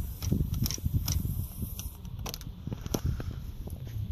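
Scattered, irregular light clicks and knocks of hands handling the fittings at the radiator cap, over a low wind rumble on the microphone.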